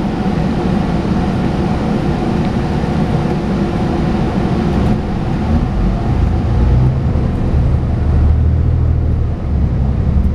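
Inside the cabin of a New Flyer Xcelsior XN60 articulated natural-gas bus: steady engine and cabin noise while waiting at a red light. About six seconds in, the engine's low rumble grows as the bus pulls away.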